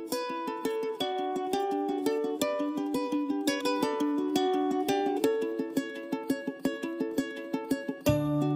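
Light background music led by a plucked string instrument, a quick, steady run of short notes.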